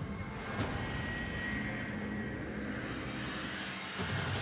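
Cinematic logo-ident sound effect: a dense, steady rumbling whoosh like a passing jet, with thin high ringing tones held over it and a sharp hit about half a second in.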